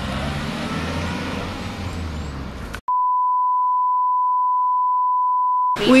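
A low car-engine rumble with outdoor noise, cut off abruptly about three seconds in by a steady, loud 1 kHz censor bleep. The bleep lasts about three seconds and stops sharply.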